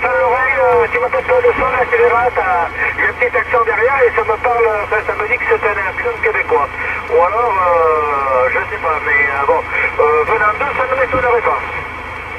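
A man's voice received on a President Lincoln II CB radio in lower sideband, coming from the set's speaker. It is cut to a narrow middle band of pitch, thin like a telephone, over a steady low hum.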